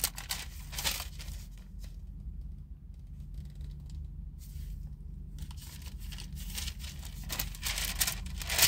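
Paper pages being leafed through while a Bible passage is looked up: a few short rustles and crinkles, the loudest near the end, over a steady low hum.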